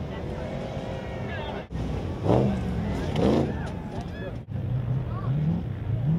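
Off-road truck engine revving hard on sand, its pitch climbing and falling in several surges. The sound breaks off abruptly twice.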